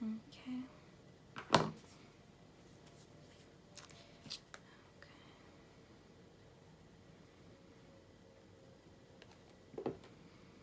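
Paper die cuts being handled and pressed onto a scrapbook page: a few scattered clicks and taps, the loudest about one and a half seconds in and another near the end.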